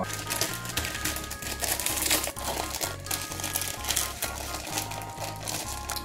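Plastic instant-noodle wrappers crinkling and rustling as the packs are torn open and the dry noodle blocks pulled out, over background music with a steady bass line.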